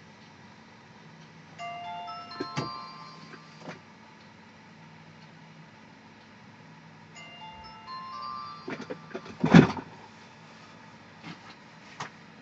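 A short electronic tune of a few beeping notes plays twice, about five seconds apart, interrupting the lesson. A loud bump follows just after the second tune.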